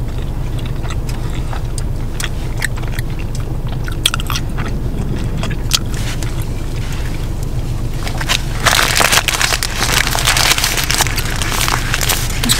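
Close-up chewing and biting into a hot dog with small wet clicks, then from about eight and a half seconds in, loud crinkling of its paper wrapper. A steady low car hum runs underneath.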